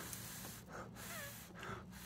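Faint breathing close to the microphone, coming and going a few times.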